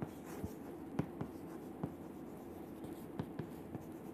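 Chalk writing on a chalkboard: a string of short, irregular taps and strokes as letters are written.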